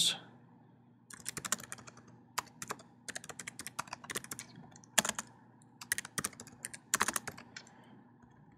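Typing on a computer keyboard: quick runs of keystrokes broken by short pauses, starting about a second in.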